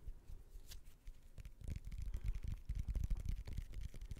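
Fingers tapping quickly on a small handheld object held right at the microphone: a rapid run of light taps that grows denser about a second and a half in.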